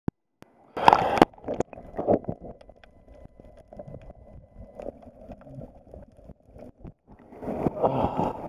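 A splash as the microphone goes under the water about a second in, then muffled underwater sound with scattered clicks and gurgles. It breaks the surface again near the end.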